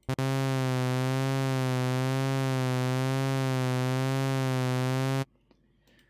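SynthMaster One software synthesizer playing one low, bright, buzzy held note with a slow, even vibrato. The wobble comes from its vibrato LFO modulating oscillator 1's fine tune. The note starts just after the opening and stops abruptly about a second before the end.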